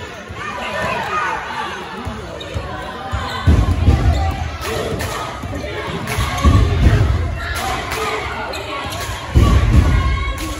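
A basketball bouncing on a hardwood gym floor, dribbled in a run of sharp, irregular thuds that echo in the large hall, under spectator chatter. Three heavy low thumps, about three seconds apart, are the loudest sounds.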